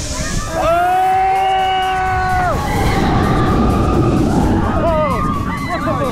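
Riders on the Baron 1898 dive coaster screaming. One long held scream starts about half a second in, then rushing wind on the camera and the train's rumble take over as it drops, with short whoops and yells near the end.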